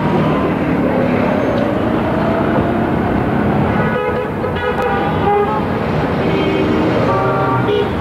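Busy street traffic running steadily, with car horns honking several times, in the middle and again near the end.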